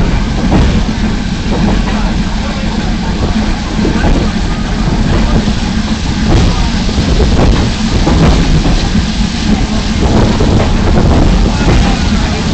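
Moving train running with a steady, loud rumble and noise, with scattered light clicks and knocks from the running gear.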